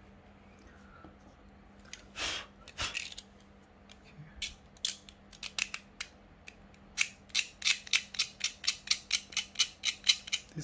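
Utility knife blade scraping the enamel coating off the end of a copper magnet wire to bare the metal. A couple of louder rasps come about two seconds in, then scattered scrapes, then quick regular strokes about three a second from about seven seconds in.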